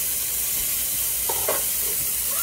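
Steaks frying in a stainless steel skillet over a gas burner: a steady sizzle of hot fat and meat juices.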